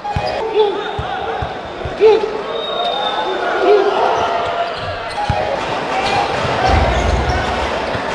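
A basketball bounced a few times on a hardwood court, over the steady noise of an arena crowd.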